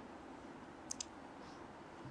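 Quiet room tone with two faint, quick clicks in close succession about a second in.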